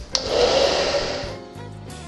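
Handheld hair dryer switched on and blowing for just over a second to dry water-based varnish on a decoupaged box lid, then cutting off. Background music plays under it and carries on alone after the dryer stops.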